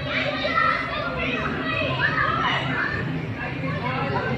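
Children's voices chattering and calling out, high and overlapping, over a steady low hum.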